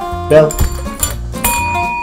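A chrome countertop call bell is struck once about a second and a half in, giving a clear ding that keeps ringing, over background music.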